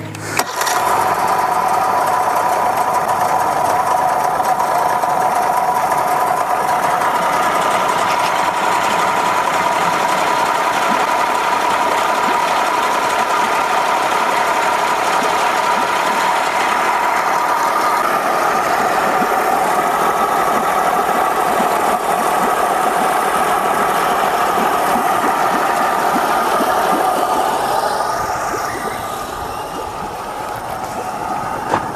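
Mercury 60 hp three-cylinder two-stroke outboard running in neutral. About half a second in it picks up sharply with a click and runs loud and steady, then drops back to a lower level near the end.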